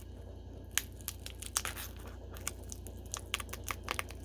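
Dry pine cone crackling and snapping as needle-nose pliers twist at its woody centre stub: a run of irregular sharp cracks and clicks, with a louder snap about a second in. The stub is stubborn and does not break off cleanly. A steady low hum runs underneath.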